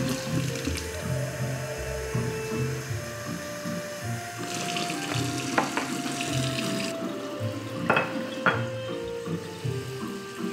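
Kitchen faucet running, its stream splashing into a stainless steel sink and over a glass bowl and a plant pot held under it. A few light knocks come in the second half, the two loudest about half a second apart.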